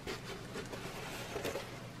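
Faint rustling and crinkling of a large fabric diamond-painting canvas and its clear plastic cover film as it is rolled up on one side and unrolled on the other, with a few light clicks.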